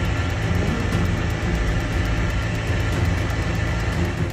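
Evinrude outboard motor running steadily, pushing the boat under way, with a steady low hum.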